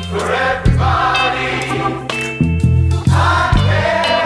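A recorded song playing, with several voices singing together over low sustained notes and a few sharp hits.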